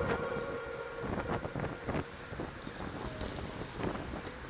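Wind buffeting the microphone of a camera riding along on a road bicycle, an uneven gusty rush mixed with tyre and road noise. The tail of the background music fades out at the very start.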